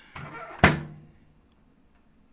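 Kenmore microwave oven door pushed shut: a single sharp thunk about half a second in, with a brief ringing after it.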